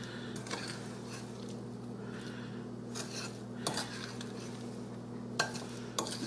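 A utensil stirring sugar- and flour-coated blackberries in a glass bowl. Soft scraping is broken by a few light clicks against the glass, over a faint steady low hum.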